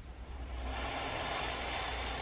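A steady rushing hiss fades in during the first half second and then holds: the ambient opening of a music video being played back, before the song starts.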